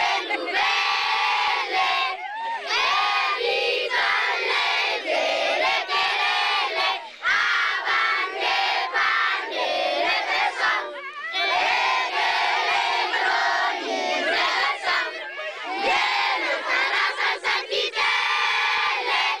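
A large group of children singing together loudly, a song in Djerma (Zarma), many voices in unison in phrases with short breaks between them.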